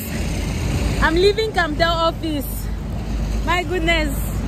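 A woman's high voice in short, wordless-sounding utterances, twice, over a steady low rumble of street noise.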